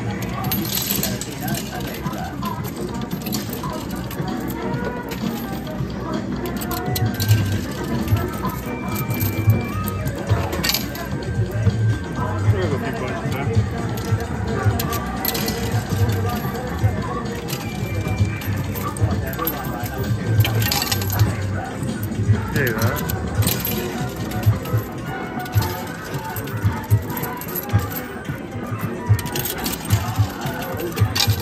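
Background arcade music with a steady beat, over which 2p coins clink now and then as they are fed into a coin pusher's chutes and drop.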